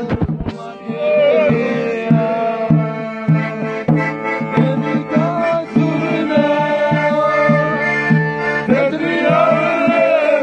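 A button accordion playing a lively folk tune with a steady pulsing bass, while men sing along in wavering voices.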